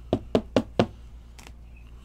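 Four quick, evenly spaced knocks, about four a second, from a card or card holder being tapped on the tabletop during card handling.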